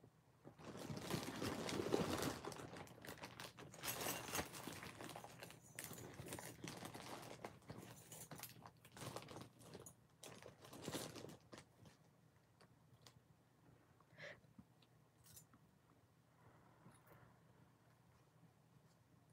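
Rummaging through a pile of metal costume jewelry: small pieces clinking and rustling against each other, busy for about the first twelve seconds, then only a few scattered clicks.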